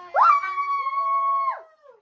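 A child's voice holding one long high note that swoops up at the start, holds steady and then falls away.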